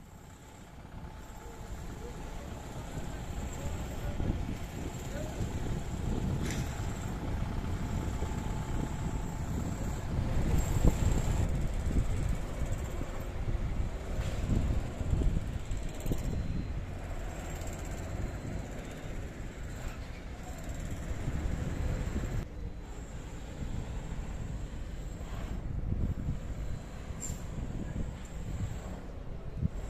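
City bus engines running at a bus station, with the low rumble of traffic. The rumble grows louder over the first few seconds and is loudest about ten seconds in, as a bus pulls away.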